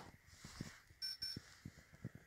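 Faint high-pitched electronic beeps, two short ones in quick succession about a second in, with a few faint clicks and knocks around them.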